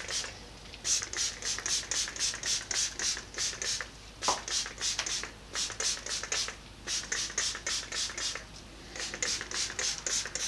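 Spray bottle of Boeshield rust remover being pumped over and over, each squeeze a short hiss, about three a second, in runs of several squeezes with short pauses between. A brief squeak about four seconds in.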